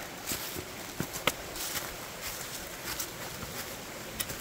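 A hiker's footsteps on dry leaf litter and creek rock: a few irregular crunches and clicks over a steady background hiss.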